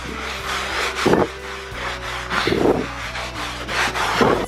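A sponge scrubbing white foam into a short-pile carpet: repeated rough rubbing strokes, about one a second.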